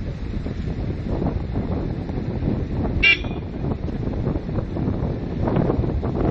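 Wind buffeting the microphone over a steady low rumble, with one short high beep, like a horn toot, about halfway through.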